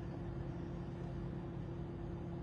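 Car idling, heard from inside its cabin: a steady low hum with a faint constant tone.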